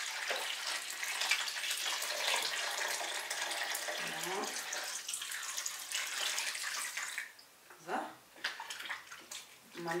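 Water poured from a glass jug into a plastic tub of water and paper pulp: a steady splashing pour that stops about seven seconds in.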